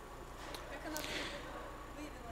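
Quiet room tone of a conference hall during a pause in the talk, with a faint tick and then, about a second in, a short soft hissing noise that fades quickly.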